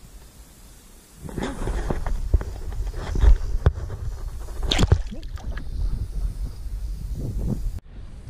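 Pond water splashing and sloshing as a crappie is lowered by hand into the water and released, over a low rumble on the microphone. It starts about a second in, has a few sharp clicks, and cuts off suddenly near the end.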